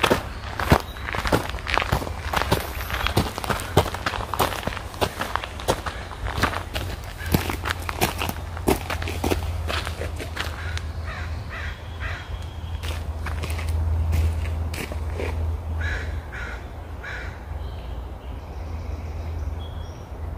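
Footsteps on a forest trail, a quick run of crunching steps through the first half that thins out later. A steady low rumble runs underneath. In the second half a bird calls a few short times.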